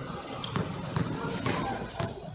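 A basketball dribbled on an outdoor hard court, bouncing steadily about twice a second.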